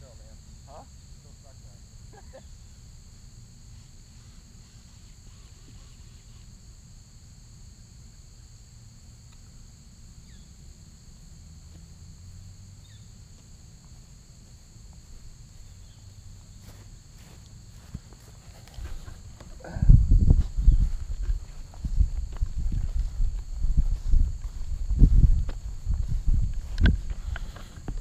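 Steady high-pitched insect chirring over a faint low rumble. About two-thirds of the way in, loud irregular low thumps and rustling start as the camera is handled and moved.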